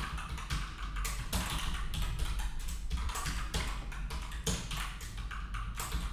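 Typing on a computer keyboard: a run of irregular keystroke clicks.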